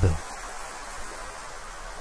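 A man's narrating voice trails off just after the start, then only a faint steady hiss remains, with no distinct sound event.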